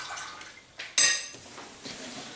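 A single sharp clink of kitchenware about a second in, with a short high ring that fades quickly, over faint kitchen background.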